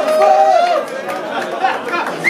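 Concert crowd in a club shouting and chattering, many voices overlapping at once.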